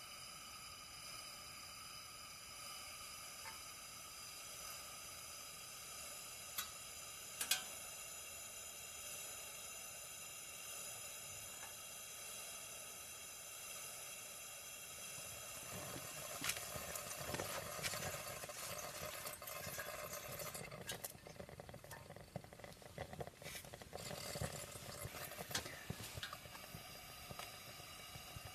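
Camping lantern burning with a faint steady hiss. Two sharp clicks come about seven seconds in, and from about sixteen seconds there is dense, irregular crackling and sputtering.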